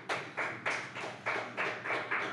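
A run of short, evenly spaced taps, about three a second, heard in a large meeting room.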